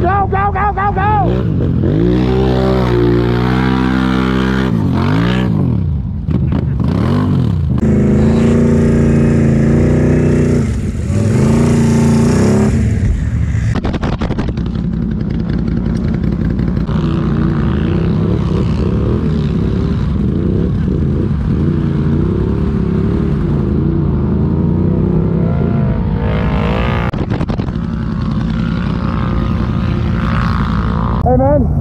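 ATV engine revving hard in repeated rising and falling surges through the first half, then running more steadily at lower revs for the second half.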